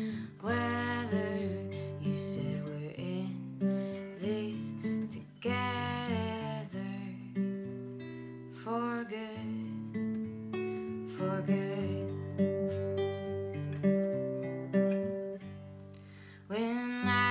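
Acoustic guitar strummed in slow chords, with a woman's voice singing a few phrases over it.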